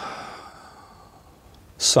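A man's breath out, a soft sigh trailing off the end of a sentence and fading within the first half second, then quiet room tone until he starts the next word near the end.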